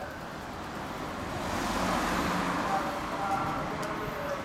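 A road vehicle passes by on the street, its tyre and engine noise swelling to a peak about two seconds in and then fading away.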